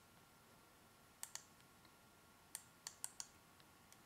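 Faint, sparse computer mouse clicks against near silence: a quick pair about a second in, then four more close together near the end.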